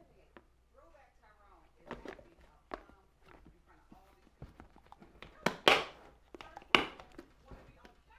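A handful of sharp knocks and clatter of kitchen utensils against a bowl and counter, the two loudest about five and a half and seven seconds in.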